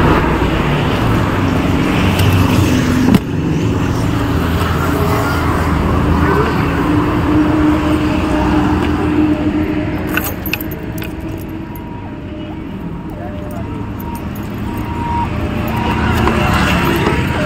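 Steady motor-vehicle noise, with a sharp click about three seconds in. It turns quieter for a few seconds around two-thirds of the way through, then picks up again.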